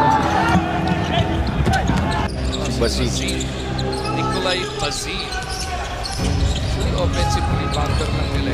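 Basketball game sound from a broadcast: the ball bouncing on a hardwood court among players' movement, over the noise of an arena crowd and indistinct voices. The sound changes abruptly a little over two seconds in, where one game's footage gives way to another's.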